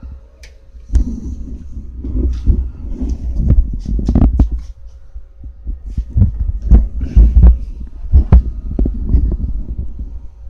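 Handling noise on a hand-held camera's microphone as it is moved: irregular low thumps and rumbling with scattered sharp knocks, loudest around the middle and again near the end.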